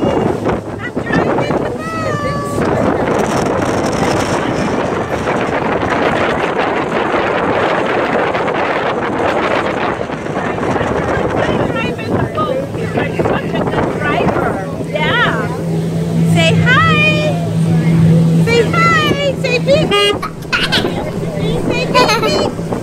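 Wind and water rushing past on a moving pontoon boat, with the boat's motor humming steadily from about halfway through. Voices talk over it in the second half.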